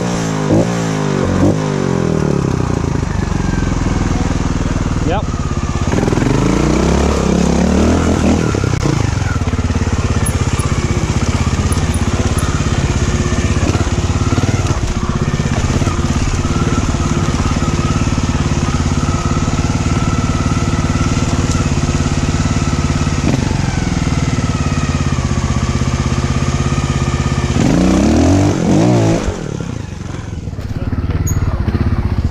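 Trials motorcycle engine heard from the rider's helmet, revved up and down in short bursts at the start and again around a quarter of the way in, then held at a fairly steady speed while riding, with another flurry of revving near the end.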